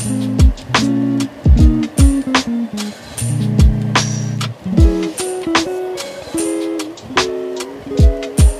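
Background music with a steady beat: deep drum hits about once a second under held chords.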